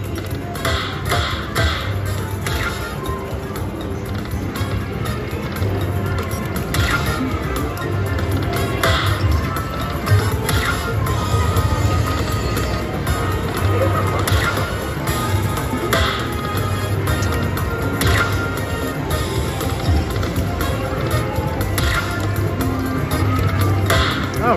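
Lightning Link slot machine's hold-and-spin bonus music, with bright chimes every second or two as the reels stop and chip symbols lock in, over a steady low casino hum.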